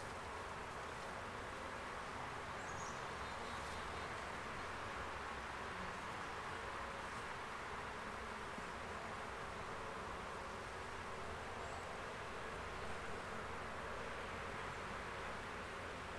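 Steady hum of many Saskatraz honeybees flying around an opened hive.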